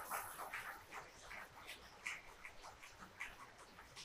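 Applause from a small seated audience, heard as scattered hand claps that thin out and fade away.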